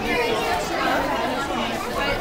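Background chatter: several people talking at once, no single voice clear.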